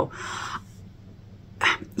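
A woman's breathy, voiceless exclamation lasting about half a second, then a short intake of breath just before she speaks again.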